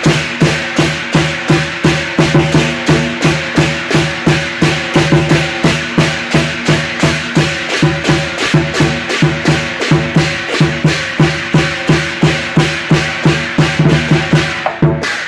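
Chinese lion dance drum struck in a steady, driving beat of about two to three strokes a second, with pairs of brass hand cymbals clashing along and their ringing sustained between strokes.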